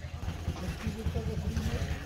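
A motorcycle engine idling close by, a steady low, fast throb that does not rise or fall.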